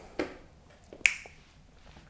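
A short sharp click about a second in, with a fainter click just before it, during a pause in speech.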